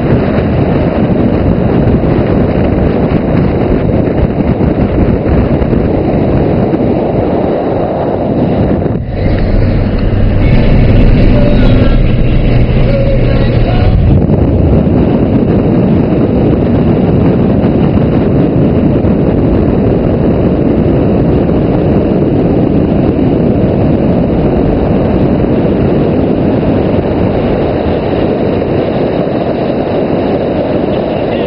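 Loud wind rush and road noise on a camera mounted outside a moving car. About nine seconds in the rush dips and, for about five seconds, a steadier low hum takes over before the rush returns.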